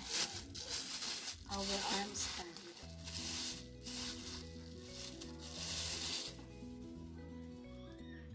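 Clear plastic bag rustling and crinkling in four or so loud bursts as a folding scissor-arm microphone stand is pulled out of it, over soft background music.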